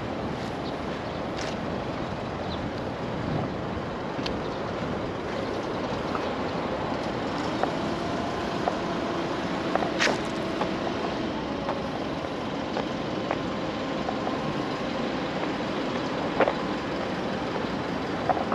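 City street traffic noise: a steady rumble of road vehicles, with a faint engine hum through the middle and a few sharp clicks, the loudest about ten seconds in.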